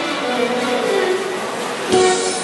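Instrumental introduction to a song played by a band through a PA in a large hall: a melodic line falling in pitch over sustained chords, ending in a loud accented chord.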